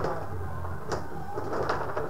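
Tabletop rod hockey game in play: the rods rattle and slide in their slots, and there are four sharp clacks as the puck strikes the metal players and the boards.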